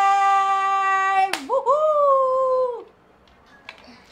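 A wordless held vocal cheer: one long steady 'ooh' note, cut off about a second in by a single sharp slap, then a shorter 'whoo' that rises and falls away.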